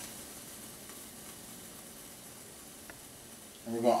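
Ground beef sizzling steadily in a frying pan as it browns, a faint, even hiss with one small click about three seconds in.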